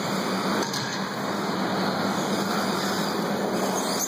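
Steady wash of noise from electric 1/10-scale 2wd RC buggies running on an indoor dirt track, mixed with the hall's ambient din.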